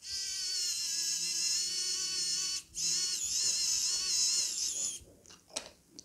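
Xiaomi Wowstick electric precision screwdriver whining as it drives nylon nuts onto the Vista's mounting standoffs, in two runs of a few seconds with a short break between. The second run wavers slightly in pitch, and a few light clicks from handling follow.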